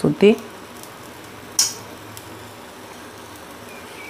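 An adai frying on an iron tawa over a gas burner: a steady, quiet sizzling hiss, with one brief sharp sound about a second and a half in.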